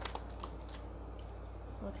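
Tarot cards being handled and laid down on the table: a few soft, brief card clicks over a steady low hum.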